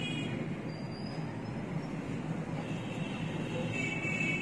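Mutton trotters frying in oil and spice paste in an open pressure cooker pot, giving a steady sizzling hiss, with faint thin squeaks near the start and the end.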